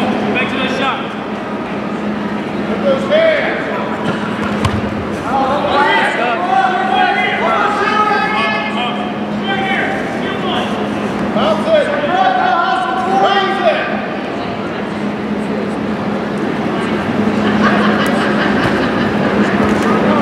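Voices calling out in bursts during a wrestling bout, over a steady low hum.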